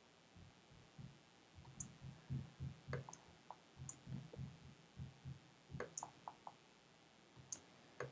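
Faint clicking of a computer mouse: about six sharp clicks spread over several seconds, among soft low knocks.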